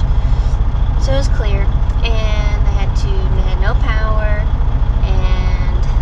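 A woman talking inside a semi-truck cab over the steady low rumble of the truck's idling engine.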